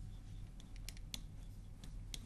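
Faint taps and scratches of a pen tip on the glass of an interactive touchscreen display as handwriting is written, a few short clicks scattered through, over a low steady hum.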